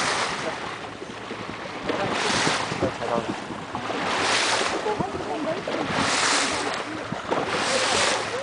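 Sea water rushing and hissing along the hull of a moving boat, swelling about every two seconds, with wind on the microphone.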